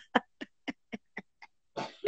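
A person laughing in short, evenly spaced bursts, about four a second.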